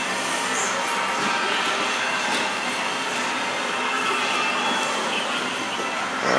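Steady background noise of a busy indoor shopping floor, an even wash of sound with no single source standing out.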